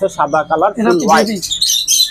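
Small birds chirping in high, short notes, clearest near the end, over a person's voice in the first part.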